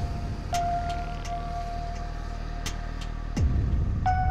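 Steady low rumble of a bus engine running, under background music with a held tone and a few light clicks; a loud falling swoop comes about three and a half seconds in.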